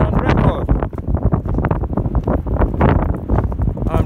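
Wind buffeting the camera's microphone in gusts, loud and uneven.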